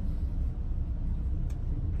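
Steady low rumble of background noise in an indoor shooting range, with one faint click about a second and a half in.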